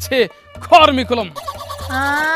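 A man's loud, exaggerated voice with long pitch swoops falling downward, heard twice, over background music.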